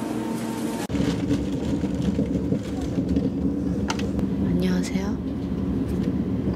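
Steady low rumble of a train heard from inside a passenger car, beginning abruptly about a second in.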